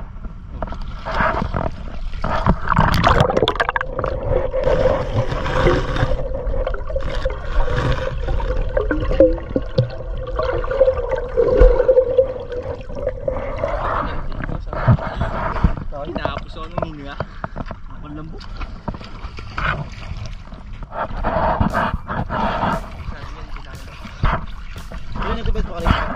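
Sea water splashing and sloshing around a camera at the water's surface as men wade chest-deep, with men's voices; in the middle a steady hum runs for about ten seconds.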